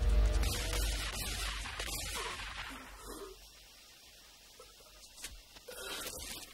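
Film soundtrack music during a shootout scene, with a deep boom at the start that fades over the first couple of seconds. A quiet stretch follows, then a few short sharp knocks near the end.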